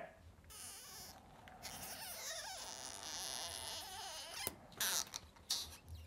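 Gloved hands working a repair tray in a spring-loaded battery press give a faint squeaky rubbing. A sharp click comes about four and a half seconds in, then a few light taps as the tray is freed.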